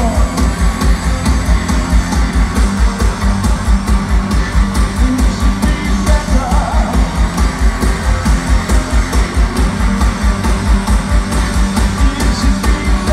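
Live band playing an electronic rock song, recorded from the stands of an arena, with a steady pounding beat about three times a second.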